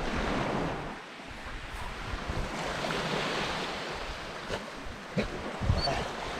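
Small waves washing onto a sandy shore, rising and falling in swells, with wind buffeting the microphone. Two brief, louder sounds come near the end.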